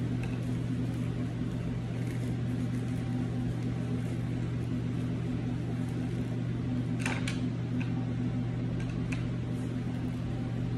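A steady low mechanical hum throughout, with a few light plastic clicks about seven and nine seconds in as a reflector clamp is forced onto the kicksled's frame bar, a tight fit.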